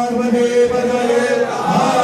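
Group of voices chanting a Hindu devotional chant in unison, holding long, slowly wavering notes.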